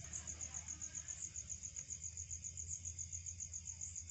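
Crickets chirping in a steady, rapid pulse of about seven or eight high chirps a second, over a low steady hum.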